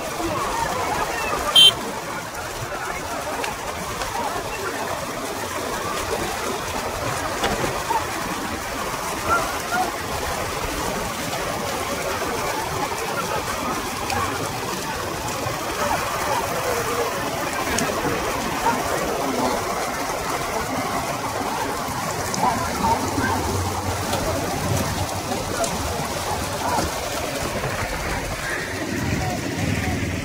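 Racing bullock carts with their riders: a steady, rough rush of noise mixed with shouting voices, and a single sharp crack about a second and a half in.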